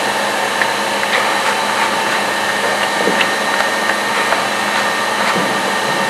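Steady drone of water-treatment plant machinery with several steady tones in it, and a few faint scrapes and knocks as filter cake is scraped off the plates of a filter press.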